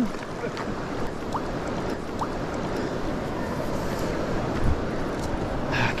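Steady rushing of a fast-flowing river, a constant even wash of water noise.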